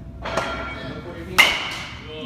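A baseball bat striking a pitched ball about one and a half seconds in: a sharp crack that rings briefly. A shorter, noisier sound comes about a second before it.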